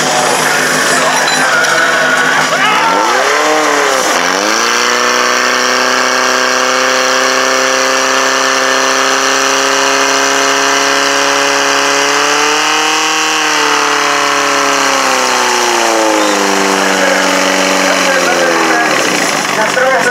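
Portable fire pump engine running at high speed, pumping water through the hose lines during a fire-sport attack. Its pitch dips sharply about three seconds in and climbs back, holds steady, rises slightly a little past the middle, then steps down twice near the end.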